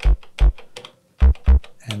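A single sampled note used as a bass line, played live from the trig keys of an Elektron Octatrack MKII in short, deep hits with the clicks of the keys. There are two hits, a half-second pause, then three more in quick succession.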